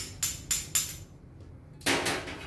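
Metal mallet tapping a surgical osteotome against the femoral neck of a plastic bone model: four light, ringing metallic taps, about four a second. Near the end, a clatter of metal set down on a steel table.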